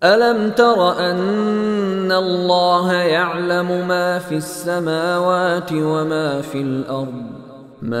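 A male Qur'an reciter chants Arabic verse in the melodic tajweed style, one voice with long held notes and ornamented turns of pitch. The phrase trails off shortly before the end.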